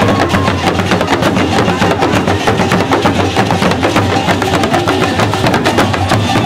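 Dagomba lunsi hourglass talking drums and gungon barrel drums played together in a fast, dense rhythm of many strikes a second, with no pause.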